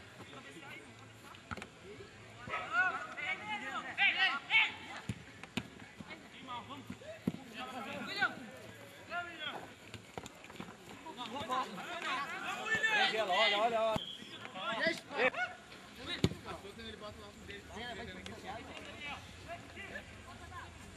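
Shouting voices of players on a grass football pitch during a match, coming in several bursts, with a few short knocks between them.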